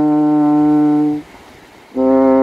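French horn holding one long, steady note of a slow melody, which ends a little over a second in, followed by a short pause before the next note.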